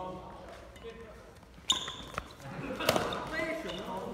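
Badminton rackets striking a shuttlecock in a rally: sharp hits in the second half, the loudest about two seconds in, several with a brief high ring from the strings.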